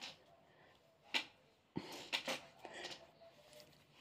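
Mostly quiet small room, broken by a short sharp click a little over a second in, another just before two seconds, and a few faint soft sounds after it.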